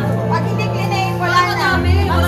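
Several people's voices, excited talk and calls, over background music with steady low notes.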